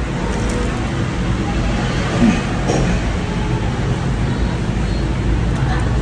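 Steady low background rumble, like traffic or an air conditioner, with faint voices in the distance.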